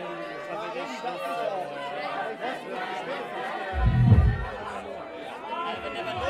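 Several voices talking over one another, with one deep boom about four seconds in.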